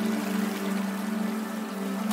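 Ambient new-age meditation music with a steady low drone, layered over a rushing water sound.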